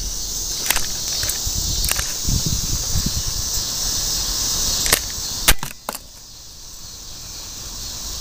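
Crickets chirping steadily in the background, with several sharp clicks and knocks from handling a multimeter probe and the meter. The loudest knock comes about five and a half seconds in.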